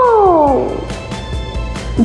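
A child's long drawn-out "ooooh" of amazement, sliding down in pitch and trailing off about half a second in.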